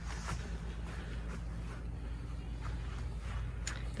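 Quiet outdoor background: a low steady rumble with a few faint rustles and handling noises from a handheld camera being carried along.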